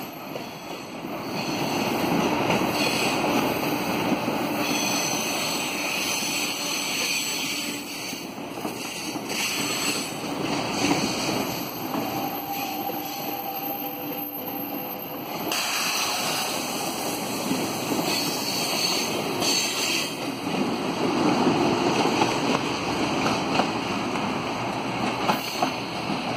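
Rotem 2005-series electric multiple-unit train rolling past slowly as it arrives, a steady rumble of wheels on rail that swells and eases. A thin steady tone shows for a few seconds around the middle.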